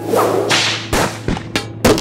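Title-card sound effects: a whoosh swelling over the first second, a couple of short hits, then a sharp whip crack near the end.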